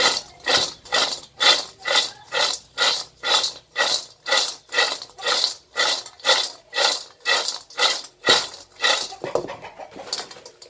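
Dried wild seeded-banana (chuối hột) pieces tossed in a wok over a wood fire, sliding and rattling across the pan in a steady rhythm of about two tosses a second, which stops near the end. This is the dry-roasting stage, done until the pieces turn golden.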